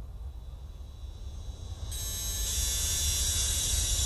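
Opening of an industrial electronic track: a low rumble fading in and growing louder, joined about halfway by a bright hissing noise carrying several steady high tones.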